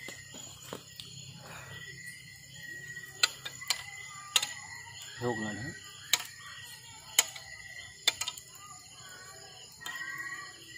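Campfire wood crackling, with sharp pops scattered irregularly through, over a steady high insect drone.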